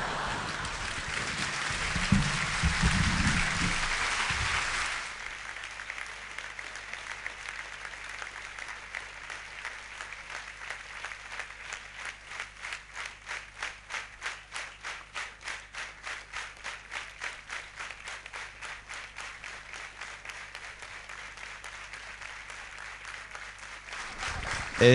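Audience applauding. It starts as loud, mixed applause, and about five seconds in it turns into steady rhythmic clapping in unison at about three claps a second.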